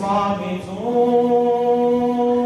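A man reciting the Qur'an in a drawn-out melodic chant (tilawah) into a microphone. His voice dips in pitch, then holds one long steady note.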